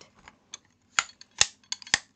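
Abacus beads clicking as they are slid by hand: five or so sharp clicks, spread unevenly over about a second and a half, the loudest two coming near the end.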